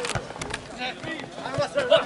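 Men's shouts carrying across an open football pitch during play, with a few sharp knocks near the start.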